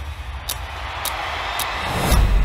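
Trailer sound design: a clock ticking about twice a second, with a rising whoosh that swells through the second half and cuts off suddenly at the end.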